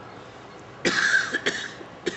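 A man coughing: a short double cough about a second in.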